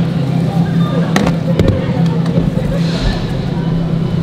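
Supermarket background with a steady low hum, and a few sharp clacks from grocery items such as a glass jar being picked up and handled.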